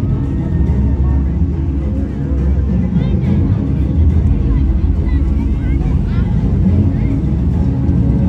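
Dramatic show soundtrack played loud over an arena sound system, dominated by a deep, steady low rumble, with faint scattered voices above it.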